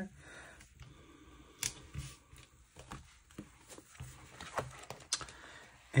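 Paper stickers being handled and pressed onto a planner page: soft paper rustling with scattered light taps and a few sharper clicks.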